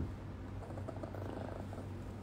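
A steady low hum with a few faint ticks.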